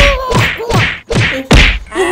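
A quick series of hand slaps on a person's wet head, about five of them, the first and one about a second and a half in loudest.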